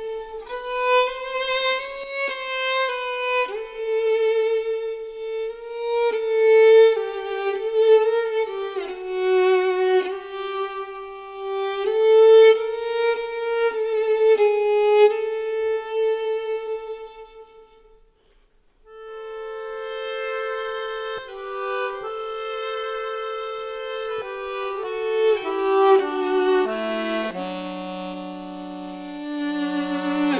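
Violin playing a slow melody with vibrato, fading out just past halfway. After a short pause the melody resumes, and near the end a lower part steps downward beneath it.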